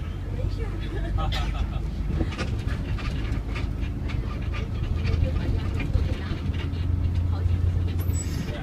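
City bus engine and road noise heard from inside the cabin: a steady low drone that grows louder in the second half, with irregular clicks and rattles over it.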